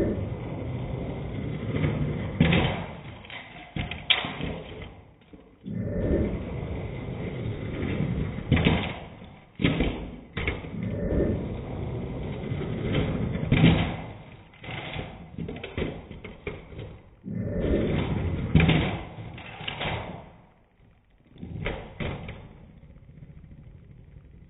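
Die-cast toy monster truck rolling down a plastic toy-car track and landing with knocks and thuds, again and again over several tries at a backflip.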